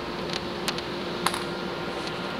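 Steady low background hum with a few light, sharp clicks of small wooden parts being handled on a table, two of them near the middle.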